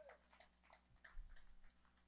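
Near silence: a faint steady low hum, with a few soft clicks and a small low thump a little past a second in.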